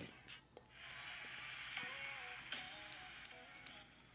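A song playing faintly through a phone's small speaker: a thin, quiet melody that fades away near the end.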